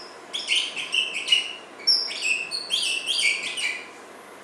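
Dry-erase marker squeaking on a whiteboard while figures are written: a quick run of short, high squeaks, one per stroke, with a short break about a second and a half in.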